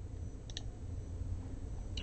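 Two quick clicks close together about half a second in, from a computer mouse clicked to advance the lecture slide, over a low steady hum.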